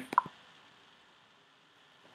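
A brief pop right at the start, then near silence with faint room tone.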